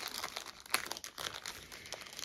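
Crinkling of the dust cover wrapped around a rolled diamond-painting canvas as fingers pick at it and pull it open, with one sharp crackle about three-quarters of a second in.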